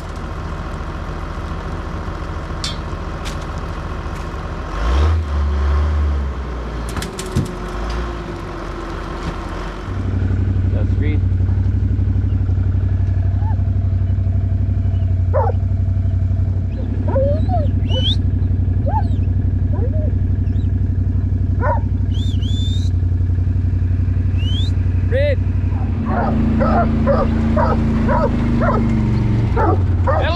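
For the first ten seconds a tractor engine idles, with a couple of low thuds as hay bales are dropped into a bale feeder. Then a farm vehicle's engine runs steadily and louder as it follows the sheep, with sheepdogs barking in short bursts over it, several barks in quick succession near the end.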